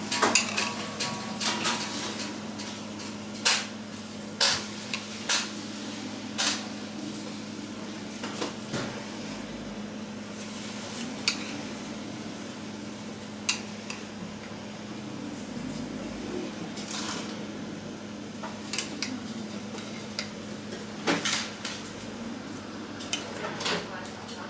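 Kitchen clatter: dishes and metal utensils knocking and clinking at irregular moments, busiest near the start and again near the end, over a steady low hum.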